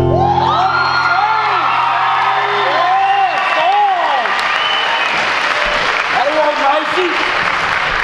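Final chord of an acoustic bluegrass band with guitar and upright bass ringing out for about three seconds, overlapped and then replaced by an audience applauding with whoops and cheers.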